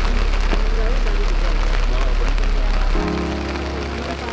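Voices in a slow melodic recitation over a heavy low rumble and a steady hiss; the rumble drops away about three seconds in, as a few held notes come in.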